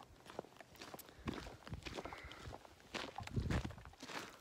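Footsteps of a person walking with a backpack on a dirt track, an irregular series of short scuffing steps.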